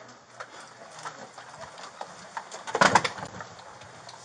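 Handling noise of a body-worn camera on a moving officer: footsteps and gear lightly knocking and rustling, with one louder thump about three seconds in.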